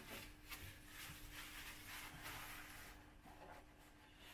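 Faint rubbing of a paper towel being wiped around the underside of a generator's frame.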